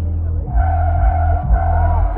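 Live concert music over a festival PA, recorded through a phone microphone: a heavy, distorted bass with a kick about once a second under a long held note.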